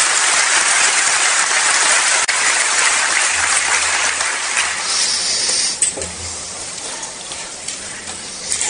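Audience applauding, steady and dense, thinning out about six seconds in.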